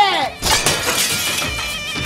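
A glass mirror shattering: one sudden crash about half a second in, with breaking glass ringing on for about a second, as a thrown tool smashes into it. A shout runs into the start, and music comes in near the end.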